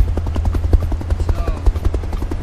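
A plastic push-along toy helicopter being run across sand, making a rapid, steady chopping clatter over a deep rumble.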